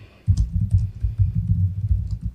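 Typing on a laptop keyboard: a quick, irregular run of dull low taps.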